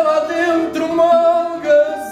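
Male fado singer holding long sung notes without words, over the plucked accompaniment of a Portuguese guitar and a classical guitar.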